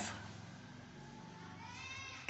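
A faint pitched call that slowly rises in pitch through the second half, over low background hiss.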